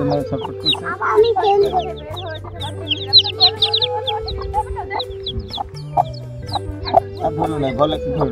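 A brood of newly hatched chicks peeping constantly, many short high cheeps overlapping, thickest around the middle. Background music with long held notes plays underneath.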